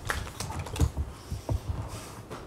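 Light, irregular clicks and taps of small objects handled on a tabletop, several times a second.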